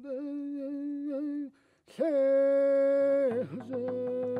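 A single voice singing a Navajo traveling song, a horse song, in long held notes with small wavering turns. The second note is louder and glides down at its end. Near the end a fast, even beat comes in under the voice.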